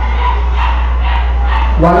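Steady low hum, with about four faint short sounds spread across the pause.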